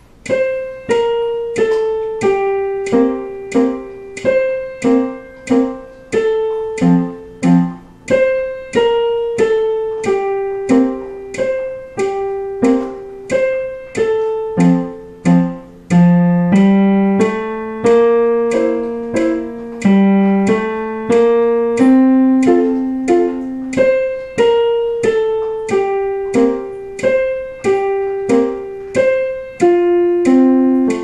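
Digital piano playing a simple waltz in F major, 3/4 time: a melody over a steady bass line of single struck notes, each dying away, at an even, moderate tempo.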